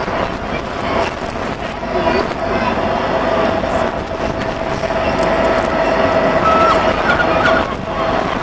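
Bulleid Battle of Britain class steam locomotive 34067 Tangmere hauling its train over the harbour viaduct, a continuous rumble that grows louder. A long, steady high tone runs over most of it and cuts off near the end.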